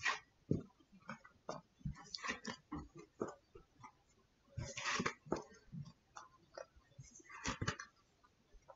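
Tarot cards being handled and stood up one at a time: scattered light taps and clicks, with a brief rustling slide about five seconds in and another near the end.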